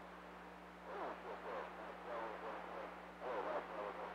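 Radio receiver hiss over a steady hum, with a faint, garbled voice transmission breaking through twice, about a second in and again near the end. The signal is weak: the S-meter barely lifts off zero.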